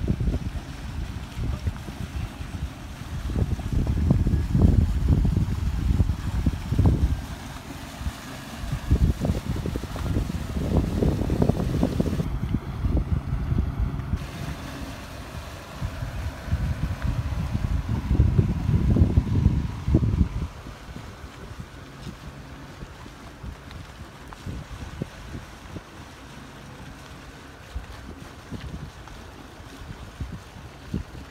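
Wind buffeting the microphone in uneven gusts, easing off about two-thirds of the way through, leaving a lower steady wind rush.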